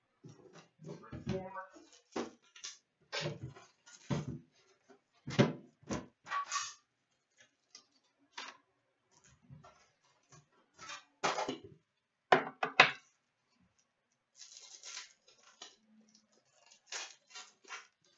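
Irregular knocks, clinks and rustles of a metal trading-card tin and foil card packs being handled on a glass-topped table, with a pack wrapper being torn open.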